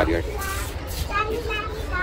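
Distant high-pitched voices in short snatches, over a steady low rumble of outdoor background noise.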